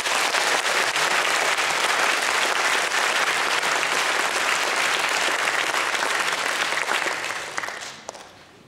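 Audience applauding at the end of a song, steady at first and dying away near the end.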